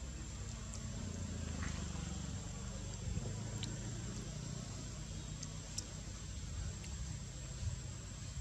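Steady outdoor background: a continuous low rumble, like a running engine or traffic, under a constant thin high-pitched whine, with a few faint clicks.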